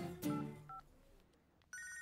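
Mobile phone ringing: a steady electronic ringtone starts near the end. Before it come two faint short beeps and a moment of near silence.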